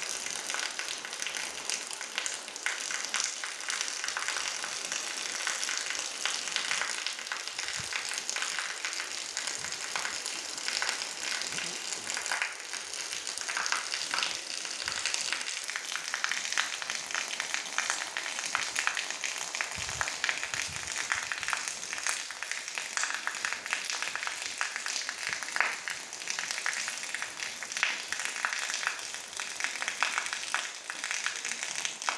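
Steady rain falling on open ground, an even hiss made of countless small drop impacts, mixed with water pouring from a roof edge and splashing onto wet sand.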